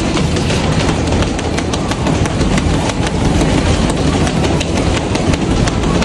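Several boxers' gloves striking leather heavy bags: a dense, irregular run of many quick punches, over a steady low rumble.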